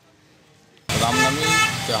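Near silence for about the first second, then street sound cuts in suddenly: traffic, voices and a vehicle horn sounding.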